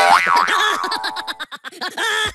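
A cartoon 'boing' sound effect: a springy pitch that dips and bounces back up near the start.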